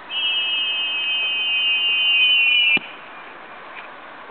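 A steady, high whistle held for almost three seconds, dipping slightly in pitch at the end and cut off by a sharp click.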